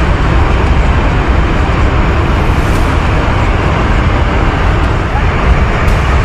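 Loud, steady rush of a flooded mountain river in spate, its muddy torrent churning.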